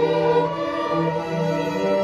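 School string orchestra of violins and cellos playing held chords, the notes changing about every half second to a second.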